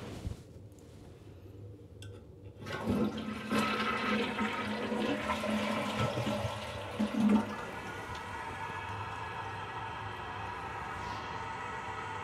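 Water rushing in a toilet, starting suddenly a little under three seconds in and settling into a steady run of water that lasts to the end.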